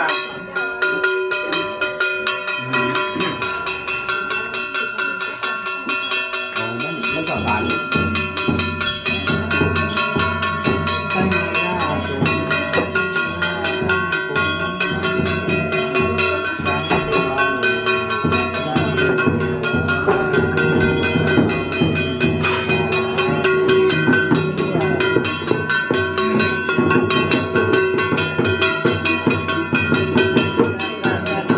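Ceremonial percussion: rapid, continuous striking of ringing metal percussion, with a drum beating underneath from about seven seconds in.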